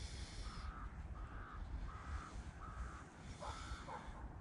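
A crow cawing repeatedly, about six short caws at roughly two a second, over a low steady rumble.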